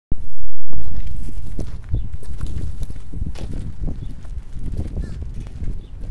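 Wind rumbling on the microphone, heaviest in the first second and then gusting unevenly, with scattered light knocks and scuffs.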